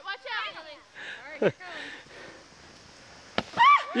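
A sled board scraping over snow and stopping short as it digs in. A single sharp knock comes near the end, and voices call out around it.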